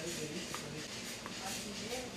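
Coffee cuppers slurping brewed coffee from cupping spoons, faint airy sips against a quiet room, part of tasting the coffee for quality.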